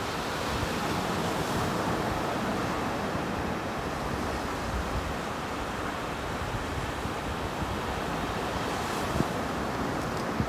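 Steady ocean surf with wind buffeting the microphone, and one brief knock near the end.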